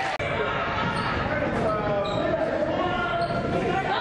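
Sounds of a basketball game in a gymnasium: a basketball bouncing on the court amid raised, wavering voices from players and spectators, all echoing in the large hall.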